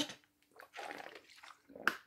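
Gulping and swallowing of water drunk from a plastic sports bottle's pop-up spout, followed near the end by a short sharp click as the spout cap is pushed shut.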